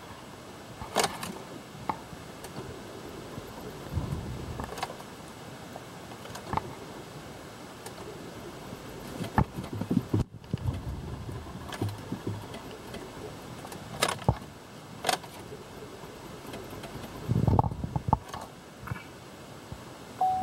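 Irregular clicks and a few short low thumps as the ignition of a 2012 Chevrolet Impala is tried with a jump box attached. The engine does not start or run, a no-start fault.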